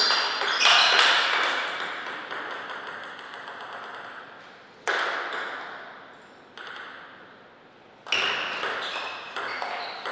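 Table tennis ball clicking off the bats and the table in a quick rally, with a few single clicks in a lull. A new run of rapid clicks starts about eight seconds in.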